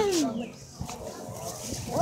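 A person's high-pitched cry falling in pitch and trailing off within the first half-second, followed by faint background voices.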